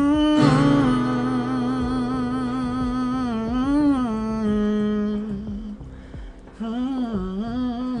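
Music: a male vocalist holds long wordless notes with vibrato over soft acoustic backing, with a brief break about six seconds in.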